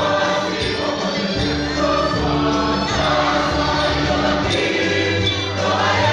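A choir singing a gospel song with instrumental accompaniment and a steady, changing bass line.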